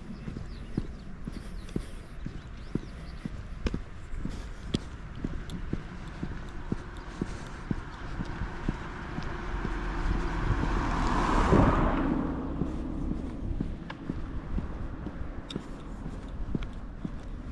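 Footsteps walking on an asphalt road, about two steps a second. A car approaches, passes close by about eleven to twelve seconds in, and fades away.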